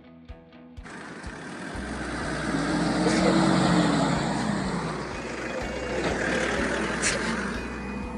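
Road and wind noise from traffic on a highway, swelling as a pickup truck passes close by, loudest a few seconds in, with an engine tone that rises and falls as it goes past. Music cuts off about a second in.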